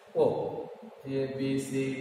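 Speech only: a man slowly calling out letters one at a time, each syllable drawn out.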